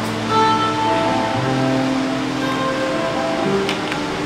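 Live band playing slow instrumental music, with held chords that change every second or two and an electric guitar among the instruments.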